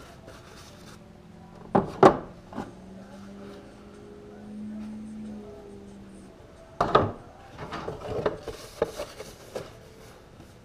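Hands handling a plastic dash piece and wiping it with an alcohol-dampened paper towel: rubbing and rustling, with a couple of sharp clicks about two seconds in and a louder knock near seven seconds followed by a flurry of smaller knocks and rubs as the part is picked up and wiped.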